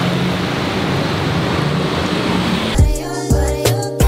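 Steady traffic noise from a busy road, an even hiss over a low drone. Near the end it cuts off suddenly and music with a strong beat and bass starts.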